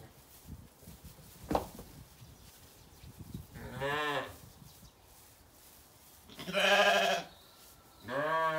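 Zwartbles sheep bleating twice, once around four seconds in and again, louder and longer, near seven seconds, with a single sharp knock about one and a half seconds in.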